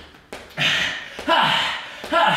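A man breathing out hard in two loud, voiced, breathy exhales about three-quarters of a second apart, in time with plank jacks. Two soft knocks in the first half-second come from the exercise.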